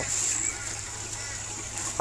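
Faint running water of a constant-flow aquaponic system, with a steady high-pitched whine and a low hum underneath.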